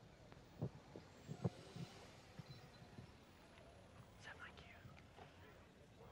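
Quiet hall with faint whispering from the audience and a few soft knocks in the first two seconds.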